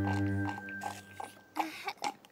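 A held music chord with a low drone ends about half a second in, followed by a few soft biting and chewing sound effects of blueberries being eaten.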